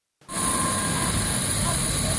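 Steady jet-turbine noise from an airliner on an airport apron: a constant rush with a high whine on top. It starts suddenly after a brief silence about a quarter second in.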